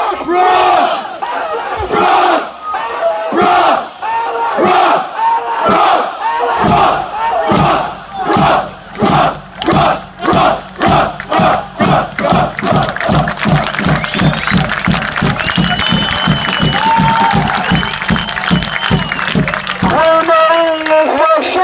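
A football supporters' crowd chanting together on the terrace. About halfway through, the sung chant turns into rhythmic shouts in unison that gradually speed up.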